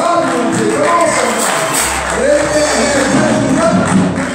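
Church gospel music: singing voices with accompaniment, a low bass tone coming in about two seconds in.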